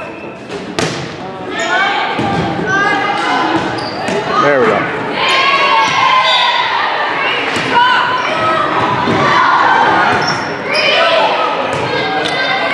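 Volleyball rally in a gym: the ball struck sharply about a second in, then more hits on the ball during the rally, with high-pitched voices of players and spectators shouting and cheering throughout, echoing in the hall.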